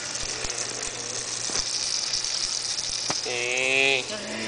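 Meat sizzling in oil in a stainless steel frying pan, with a few sharp clicks of a metal spatula and fork against the pan. Near the end a short held voice-like tone is the loudest sound.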